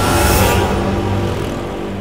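Dramatic background score of sustained low tones, with a whoosh sound effect swelling and fading about half a second in.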